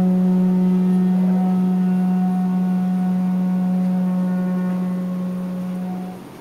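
A didgeridoo holding one steady drone note, its overtones brightening about a second in, slowly fading and cutting off at the end.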